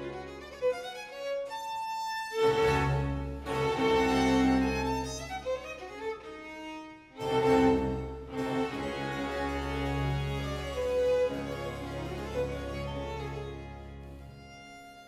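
A baroque string orchestra plays with harpsichord and lute continuo, violins leading over cellos and double bass. The bass drops out briefly twice, about two seconds in and again about seven seconds in, and each time the full ensemble comes back in loudly.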